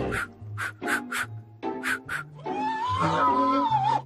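Cartoon soundtrack music with low bass notes and a steady run of short, crisp percussion hits. In the second half it gives way to a loud, wavering, warbling cry from a cartoon character.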